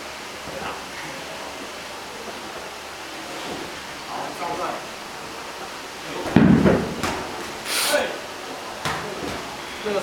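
Scattered voices in a large practice hall, with one loud thump about six seconds in, then a few sharper knocks and a brief hiss.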